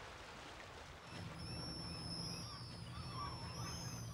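Pigeon guillemots giving thin, high whistling calls that glide up and down, starting about a second in. Beneath them runs a low steady hum.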